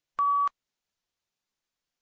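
A single short electronic beep: one steady mid-pitched tone about a third of a second long, the cue tone that marks the start of a PTE read-aloud answer.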